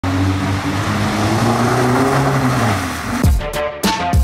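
A car engine running loud under a rushing noise, its pitch slowly rising, then an electronic music beat with heavy kick drums comes in about three seconds in.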